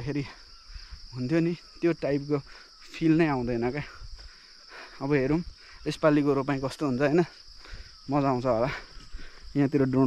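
A steady high-pitched insect chorus, with a man's voice talking in short phrases over it.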